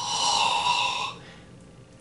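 A man's drawn-out breathy hiss through the mouth, lasting about a second, then fading.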